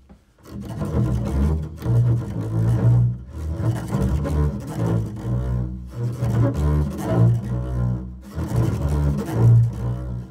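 Double bass played with the bow in free improvisation: a string of low, short, sustained notes, with a brief gap just after the start and short pauses a few times.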